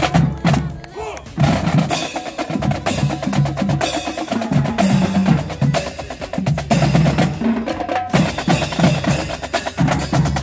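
Marching drumline playing a street cadence: rapid snare drum strikes and rolls over bass drum beats.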